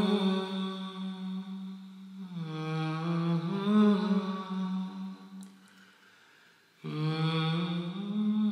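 A wordless voice humming a slow, low melody in long held notes. It fades almost away about three-quarters of the way through, then comes back near the end.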